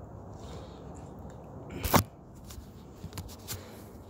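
A brief rustle that ends in a sharp thump about two seconds in, followed by a few faint clicks, over a steady low background hum.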